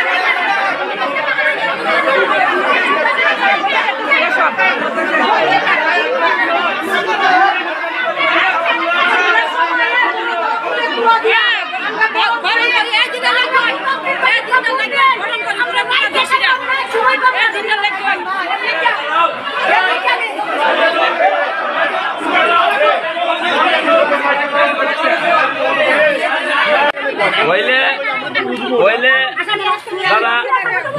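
Crowd chatter: many people talking over one another at once, a dense, unbroken babble of voices.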